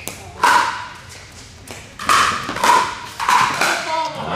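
Pickleball paddles hitting a hollow plastic ball in a rally: about five sharp pops with a short ringing pitch, one early on and then four in quicker succession over the last two seconds as the exchange speeds up at the net.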